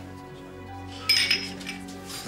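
A bright clink of glass tableware about a second in, ringing briefly, over soft background music with long held tones.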